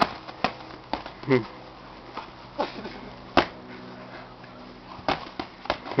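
Boxing gloves landing punches: a string of irregular sharp smacks, several coming close together near the end, with a short shout and a laugh from an onlooker.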